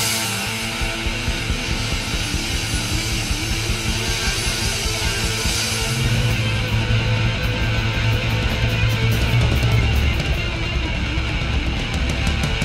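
Thai alternative rock recording playing, with electric guitar. A heavier bass part comes in about halfway through, and fast, regular cymbal strokes run through the last few seconds.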